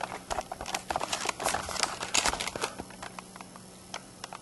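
A quick, irregular run of light clicks and taps, dense for the first two and a half seconds, then thinning to a few scattered ticks.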